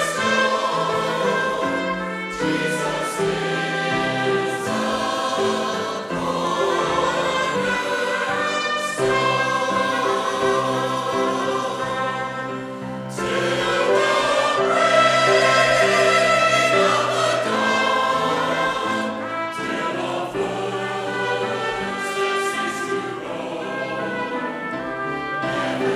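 Mixed choir of men's and women's voices singing in held phrases with piano accompaniment, growing louder about halfway through.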